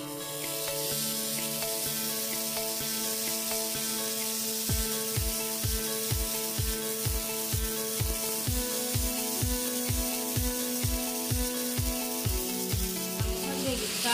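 Chicken breasts sizzling as they fry in a pan, a steady hiss, over background music with long held notes; a regular beat joins the music about five seconds in.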